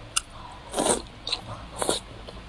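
Close-miked mouth sounds of a person biting into and chewing a piece of spicy food. There is a sharp click just after the start, a longer bite around the middle and another near the end.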